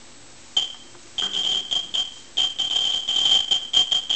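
Neutron detector's audible counter beeping, a rapid, irregular run of high-pitched pips and clicks, one per detected neutron. It starts about half a second in and crowds into a near-continuous tone by about two and a half seconds. The high count rate shows a strong concentration of slow neutrons in the polyethylene flux trap around the americium-beryllium source.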